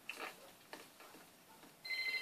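Faint clock ticking, slow and even at about two ticks a second, played through a TV's speaker. Near the end a telephone starts ringing with a steady electronic tone.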